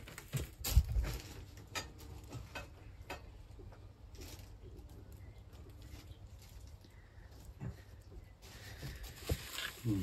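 Items knocking and clinking as a plastic storage crate of crockery and ornaments is rummaged through, with the loudest knocks in the first second. Then a quieter stretch with faint sounds of two dogs playing, and a few more knocks near the end.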